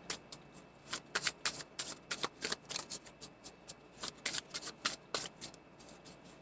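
A new deck of tarot cards being shuffled by hand: a quick, irregular run of short card clicks and slaps, a few a second.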